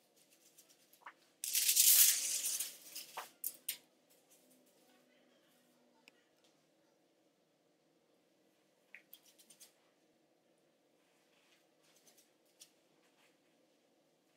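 Aluminium hair foil crinkling loudly for about a second and a half, followed by a few short ticks and then faint light rustles and clicks as the foil and hair are handled.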